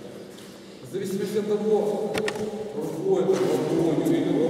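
A man talking, starting about a second in after a short pause.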